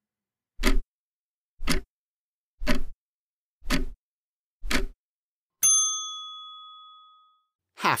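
Countdown timer sound effect: five clock ticks about a second apart, then a single bell ding that rings out and fades over about two seconds, signalling that answering time is up.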